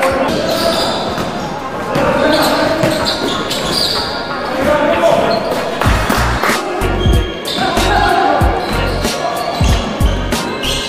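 Basketball being dribbled and bounced on a hardwood gym floor during a game, with players calling out, echoing in a large sports hall.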